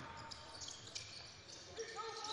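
Faint court sounds: a basketball dribbled on a hardwood floor, with a few soft knocks and faint voices.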